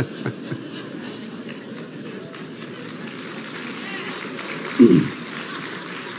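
Low, steady murmur and room noise of a seated audience in a large hall, with one short voice sound about five seconds in.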